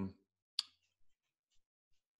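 A single short, sharp click about half a second in, followed by a few faint ticks.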